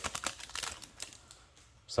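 Foil booster-pack wrapper crinkling as trading cards are pulled out and handled: a scatter of light crackles over the first second or so, then it dies away.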